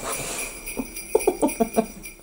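Sleigh bells jingling in a short music sting, with a quick run of short notes in its second half.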